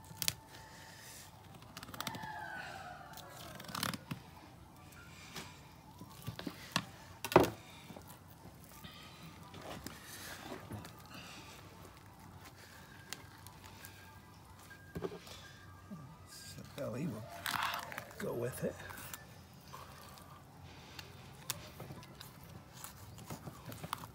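Fillet knife cutting a loin off an albacore tuna, the blade scraping and ticking against the backbone as the flesh tears away; irregular small clicks, with one sharper click about seven seconds in.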